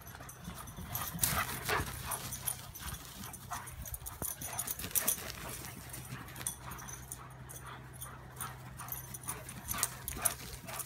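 Two dogs, one of them a Doberman, play-chasing and wrestling on grass: quick, irregular thuds and scuffles of paws and bodies, with a steady low hum underneath.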